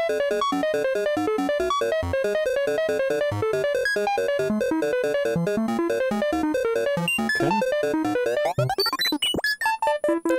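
A fast run of short analog synthesizer notes played through a Doepfer A188-2 bucket-brigade (BBD) delay set to its slowest delay clock. It sounds gritty and crushy, with the BBD's clock noise very noticeable. In the last few seconds the pitches swoop and the sound breaks up as the delay clock is turned by hand.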